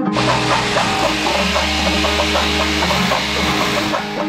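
Electric drill boring into a wall: a loud, steady grinding noise with a low hum under it. It starts at once and stops at the end, over plucked-string background music.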